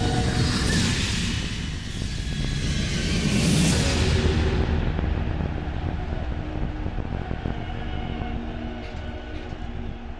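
TV sports programme intro sound design: a low rumbling drone with two swelling whooshes in the first four seconds, then settling and fading.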